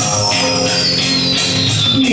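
Rock band playing live, electric guitar over drums, with a steady beat. A high tone glides slowly down in pitch throughout.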